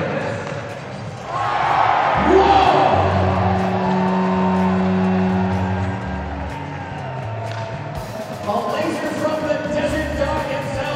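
Arena crowd cheering from about a second in, then a goal horn sounding for about four seconds, its pitch rising as it starts before holding steady, marking a goal. Arena music plays near the end.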